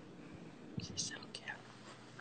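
Faint whispering, a few soft hissy whispered sounds about a second in.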